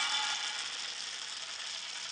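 Roasted coffee beans pouring and clattering against one another in a dense, continuous rattle that slowly fades.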